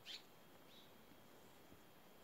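Near-silent outdoor quiet with a small bird chirping: one short, high, falling chirp right at the start and a fainter chirp just under a second in.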